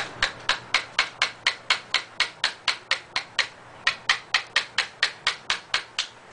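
Hammer tapping nails into small wooden support pieces: quick, light, even strikes about four a second, with a short pause about halfway through.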